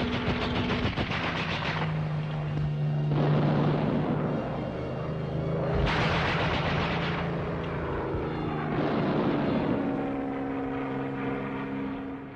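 Piston aircraft engines droning low and steady, with four long bursts of rapid gunfire from the bombers and the anti-aircraft guns.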